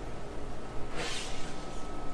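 Steady low hum of shop refrigeration, with a brief swish about a second in as the glass door of a display fridge swings shut.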